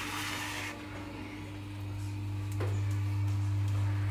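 Electric potter's wheel running with a steady low hum while wet clay is worked by hand on it; a brief hiss right at the start and a faint click about two and a half seconds in.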